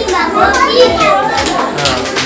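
A group of young children's voices, many at once, speaking or chanting together; hand clapping starts near the end.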